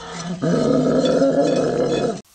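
Electric hand mixer switched on about half a second in, running loud and rough while whipping a bowl of coffee mixture for whipped coffee.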